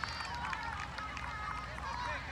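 Soccer players shouting and calling to each other, several voices overlapping in short calls heard from across the pitch.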